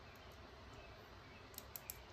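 Near silence: quiet room tone, with a few faint, light clicks near the end.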